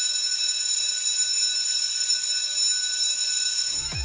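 Steady high-pitched alarm or buzzer tone with many overtones. It holds without change and cuts off near the end, where music with a heavy bass beat comes in.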